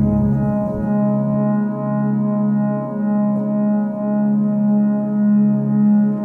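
Ambient synthesizer music: a sustained, organ-like chord held steady, its volume swelling and ebbing gently about once a second.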